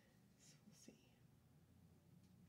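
Near silence: room tone, with two faint short hisses about half a second in and a soft tick near the one-second mark.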